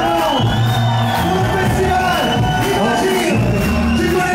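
Live band music played loud, with a singer's voice over a steady beat.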